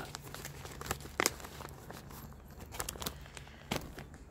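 Paper and packaging being handled, rustling and crinkling, with two sharper clicks, about a second in and near the end.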